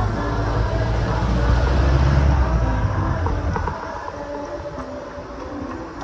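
A jeepney's diesel engine rumbles close alongside, loudest about two seconds in and dropping away a little before halfway, over traffic noise. A group chants underneath throughout.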